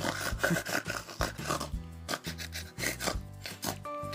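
Scratching and rubbing on a wooden tabletop in many short strokes as a twine-wrapped cork toy is pushed about, over steady background music.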